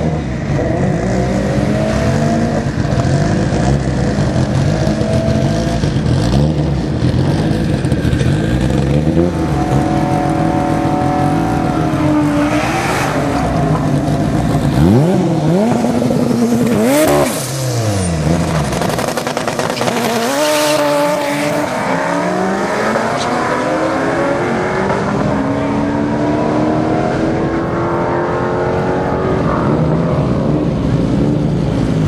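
Drag-racing car engines at full throttle, their pitch repeatedly climbing and then dropping back as they shift through the gears. About halfway through, one engine sweeps sharply up and down in pitch.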